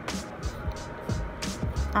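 Short scratching strokes of an 8B graphite pencil writing letters on paper, over faint background music.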